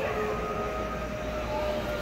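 Steady store background hum with a few faint, long held tones over it.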